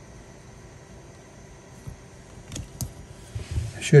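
A few faint, light clicks and taps of small 3D-printed plastic parts being handled between the fingers, over a low steady background hum.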